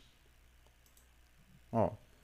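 A faint computer mouse click in an otherwise quiet room, then a single short spoken word near the end.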